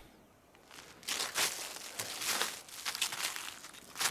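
Footsteps crunching through dry, frosty leaf litter as a person walks forward, beginning about a second in with a step or two each second.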